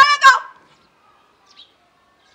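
A woman's voice breaking off her singing with two loud, short, strident cries about a third of a second apart, followed by near quiet.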